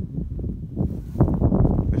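Wind buffeting the microphone: a low rumble that grows louder about a second in.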